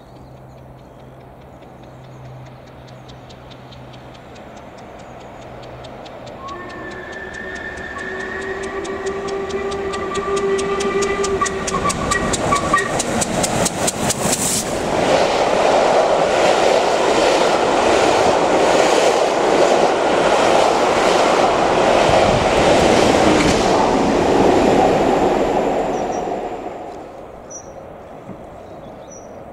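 LMS Jubilee class three-cylinder steam locomotive 45562 Alberta approaching at speed with its train, growing steadily louder and sounding its whistle in one long steady blast of several seconds. About halfway through there is a loud burst of exhaust as the engine passes directly beneath, then the carriages' wheels click in a regular rhythm over the rail joints before the sound falls away near the end.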